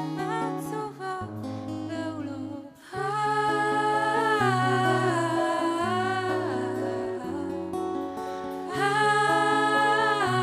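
A woman singing a slow song live into a microphone, accompanied by acoustic guitar. It starts softly, dips for a moment, then swells fuller and louder from about three seconds in.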